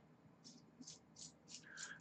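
Near silence, with about five faint, short rustles from hands handling small tools and parts on a desk.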